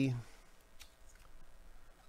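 Faint rustling and a few soft ticks from trading cards and a card-pack wrapper being handled in nitrile-gloved hands.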